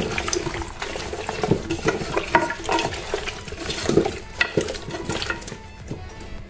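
A hand mixing raw chicken pieces with sliced onions and salt in an aluminium pressure cooker: irregular wet squelching and slapping of the meat, with small knocks against the pot. The sounds thin out near the end.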